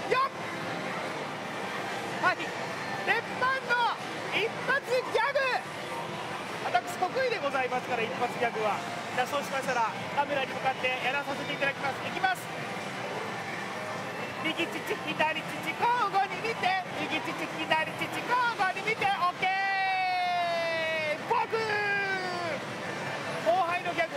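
A man's voice talking and performing a comic routine over the steady background noise of a pachislot hall. About twenty seconds in, a long pitched sound slides downward.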